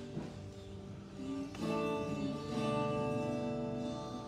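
Live worship band playing an instrumental stretch, led by strummed acoustic guitar chords that ring on; a new chord is struck about a second and a half in.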